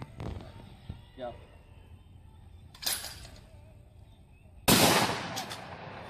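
A long gun firing: a sharp crack about three seconds in, then a much louder gunshot near the end that rings out and fades over about a second.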